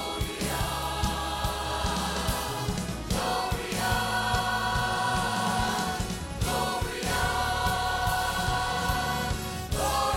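Mixed choir singing with instrumental accompaniment, holding long chords that change about every three seconds.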